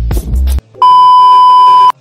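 A short burst of loud, bass-heavy music cuts off about half a second in. Then a loud, steady electronic beep, a single high tone like a censor bleep, is held for about a second and stops abruptly.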